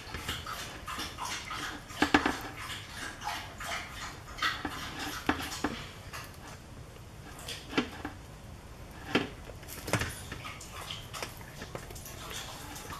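Wet, squishing sounds of gelatin jigglers being pressed out of a flexible silicone mold, with irregular soft clicks and taps against a metal baking sheet.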